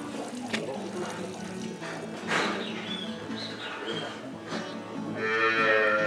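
A cow mooing once, a long steady call near the end, over soft background music.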